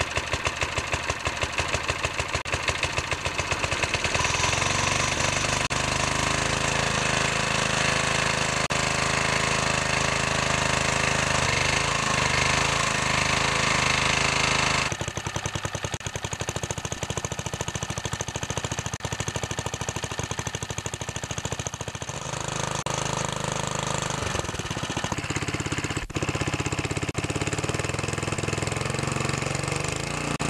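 Old 3.5 hp Briggs & Stratton single-cylinder engine on a rototiller running after a cold start, its ignition fixed by newly sanded and gapped points. It revs up about four seconds in, runs steady, then drops to a lower speed about halfway. It runs fairly well but hesitates at times when throttled up, which the owner puts down to a carburettor needing a good cleaning.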